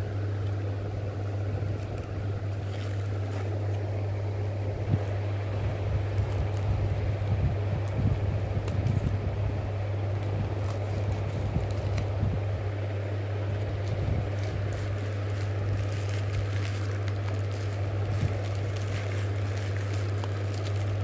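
A steady low hum, with scattered crinkles and clicks of a plastic courier mailer being handled and cut open with scissors.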